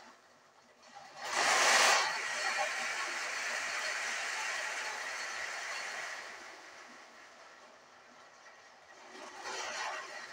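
Electric countertop blender switched on about a second in, grinding a jar of dry peanuts; it is loudest at first, runs steadily, dies down after about six seconds and starts up again near the end. The blender, which the owner says is not that good, struggles with the load.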